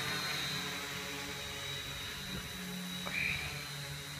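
Hobby King Alien 560 quadcopter's electric motors and propellers humming steadily as it hovers in GPS hold, with a thin high whine above the hum.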